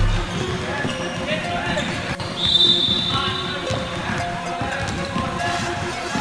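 Basketballs being dribbled on a hardwood gym floor, many bounces overlapping, with voices echoing in the hall. A brief high-pitched squeal sounds a little past two seconds in.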